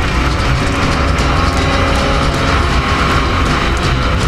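Yamaha R25 parallel-twin engine running steadily under way, heard from on the bike, with music playing over it.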